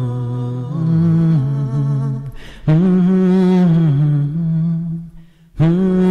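Wordless vocal music: humming voices holding long notes that glide slowly from one pitch to the next, breaking off briefly about two and a half seconds in and again for about half a second near five seconds in.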